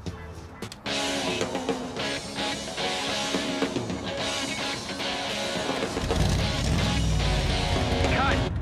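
Funky, guitar-driven music playing on a car radio, coming in loud about a second in. A deep low rumble joins underneath about six seconds in.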